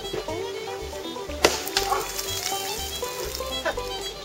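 Pick striking wet layered sandstone and limestone: one sharp blow about a second and a half in and a lighter one near the end, over background bluegrass fiddle music.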